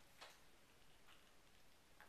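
Near silence: room tone, with a faint click about a quarter second in and another, fainter one around a second in.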